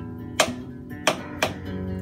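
Knife chopping dill pickles on a cutting board: three sharp chops, about half a second in, a second in and just after, over guitar music playing in the room.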